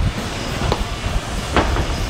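Steady low mechanical rumble at a building site, with two light knocks from boards being handled in a materials hoist, one just before the middle and one near the end.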